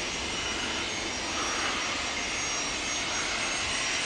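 Embraer Legacy 500 business jet's twin Honeywell HTF7500E turbofans running at low taxi thrust: a steady jet whine with high thin tones over a broad rush of noise, swelling slightly about a second and a half in.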